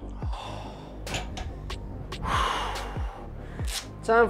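Electronic background music with a steady kick-drum beat, over a man breathing hard after a heavy set of barbell curls, with a long exhale a little past two seconds in.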